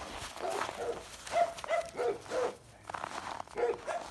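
A dog barking in a quick run of short barks, about three a second, with one more bark near the end, over footsteps crunching on snow.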